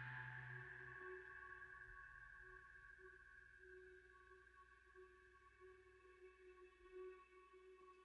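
A live band's last struck chord and cymbal ringing out and fading. Low notes stop about a second in, leaving faint sustained tones, one lower one wavering, on the edge of silence.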